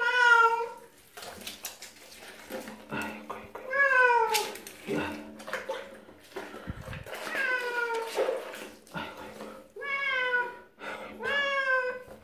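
Domestic cat meowing five times while being shampooed in a bath. The meows are drawn out and fall in pitch at the end, spaced a few seconds apart.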